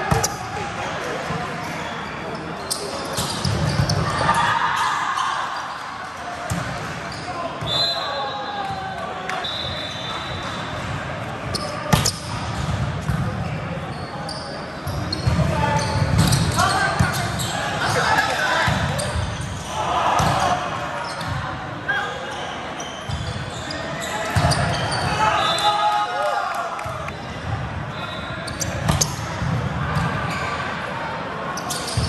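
Indoor volleyball in a large, echoing hall: sharp hits of the ball, with a serve struck right at the start and a loud hit about twelve seconds in, amid players' voices and chatter from other courts.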